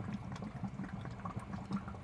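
Faint, steady watery background sound of bubbling water.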